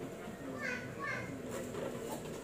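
Children's voices in the background, with two short high-pitched calls about half a second apart in the middle.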